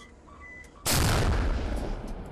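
A large-calibre gun fires a single shot about a second in, a sudden loud blast followed by a long rolling decay.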